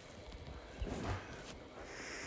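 Faint soft thumps and taps, a few stronger ones around the middle, from fingers working a tablet's touchscreen and handling the tablet.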